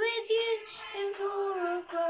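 A young boy singing, holding two long notes with a brief break between them; the second note sags slightly in pitch.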